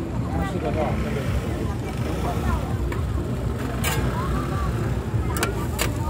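Busy street-market din: overlapping crowd chatter over a steady low rumble. In the second half come a few sharp clicks of metal spatulas against the iron griddle.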